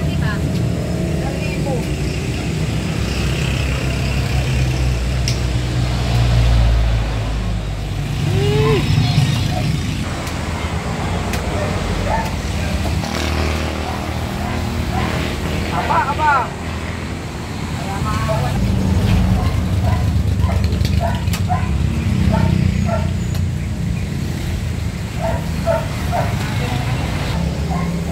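Road traffic passing close by, a low rumble that swells as vehicles go past, with voices in the background and a few sharp knocks from a cleaver chopping roast pig.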